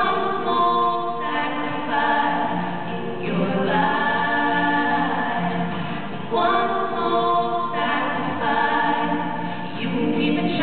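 Two female voices singing a slow song together in harmony, with acoustic guitar accompaniment, amplified live through the hall's sound system. The singing runs in long held phrases, with a brief breath between lines about three seconds in and again a little after six seconds.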